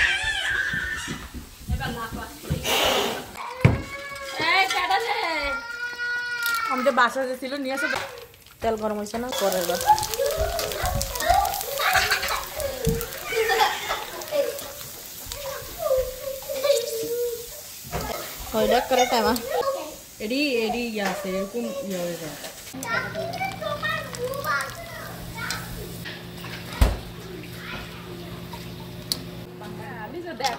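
Children's voices, talking and playing. About three-quarters of the way through a steady low hum sets in under them.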